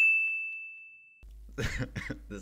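A single bright, bell-like 'ding' sound effect: one struck high tone that rings and fades away over about a second, then cuts to silence. A man's voice comes in near the end.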